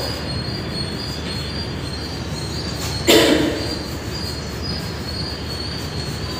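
Chalk writing on a blackboard, with faint short squeaks from the chalk, over a steady low rumble of room noise. About three seconds in there is one short, sharper sound.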